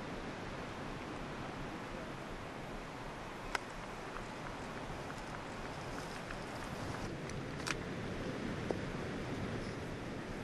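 Open-air golf-course ambience with a steady wash of wind noise. About three and a half seconds in comes a single sharp strike, the golf club hitting the ball on a chip from the rough. A thinner click follows near the eighth second.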